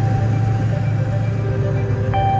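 In-cab engine and road noise of a Ford Super Duty pickup with a 7.3 Powerstroke diesel, driving at a steady speed: a steady low rumble with a thin steady whine above it. Background music begins to come in during the second half.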